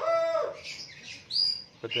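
A small bird gives one short, high chirp about halfway through, rising and then holding briefly.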